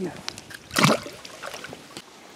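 A single short splash just under a second in: a hand-landed bass let go back into the lake.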